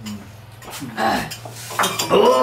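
Stainless-steel tumblers and tableware clinking and knocking on a wooden table, a few short clinks in the middle.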